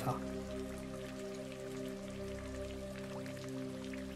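Steady rain ambience, soft and even, under quiet background music holding a sustained chord.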